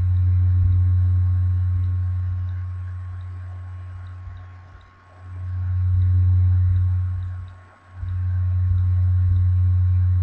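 Loud, steady low hum that fades down twice, about five seconds in and again near eight seconds, then swells back, with a faint steady high whine above it.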